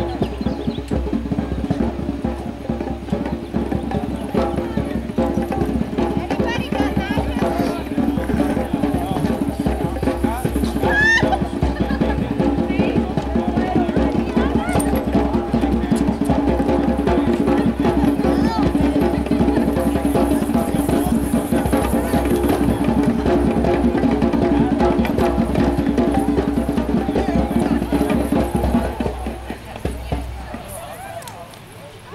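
Voices singing together over a steady drum beat, dance music for a circle dance; it stops near the end.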